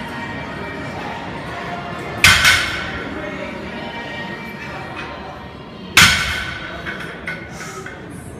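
Loaded barbell with large plates set down on the gym floor between deadlift reps: two heavy thuds about four seconds apart, each with a short metallic ring from the bar, over background music.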